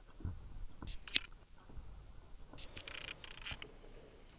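Pages of a hardback book being handled and turned: soft paper rustles and small clicks, with one sharp click about a second in and a longer rustle around three seconds in.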